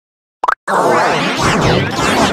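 Dead silence, then about half a second in a brief cartoon-style plop, followed at once by a loud, dense mix of music and voices whose pitch wavers and bends, as if run through a warping audio effect.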